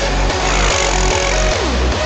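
Electronic dance music with a steady pulsing bass beat and synth lines, with a rising swell of noise about half a second in.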